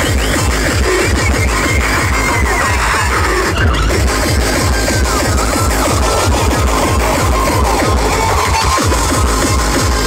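Hardcore/terror DJ set played loud over a festival sound system, heard from the crowd: a fast, relentless, distorted kick drum with high squealing synth lines that bend up and down in pitch.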